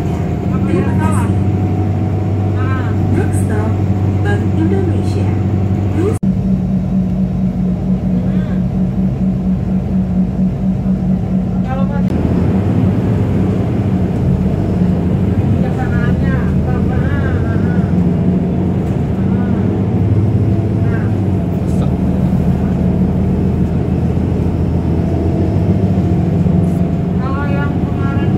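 Engine drone and road noise inside a moving Transjakarta city bus, a steady low hum with rumble under it. The drone changes abruptly twice, about 6 and 12 seconds in. Indistinct voices come through briefly now and then.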